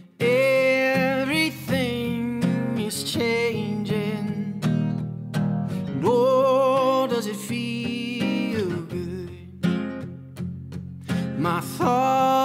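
A man singing with strummed acoustic guitar, played back from the vocal microphone's track of a live recording. A high-pass (low-cut) EQ on the track is switched off partway through and back on near the end, changing the low end of the tone.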